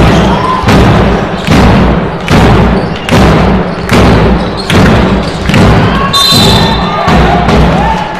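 A fans' drum beaten in a steady rhythm, one loud beat about every 0.8 seconds, over crowd shouting in a large sports hall. A referee's whistle blows a little after six seconds in.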